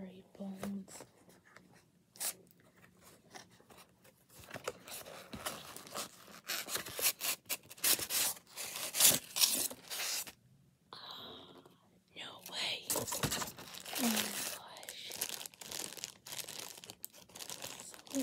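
A small cardboard product box being opened and its paper and plastic packaging handled, heard as irregular tearing, rustling and crinkling noises. The noise is loudest about six to ten seconds in.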